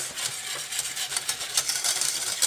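Wire whisk stirring a coconut milk and brown sugar sauce in a stainless steel saucepan, a continuous scraping swish of the wires through the liquid and against the pan.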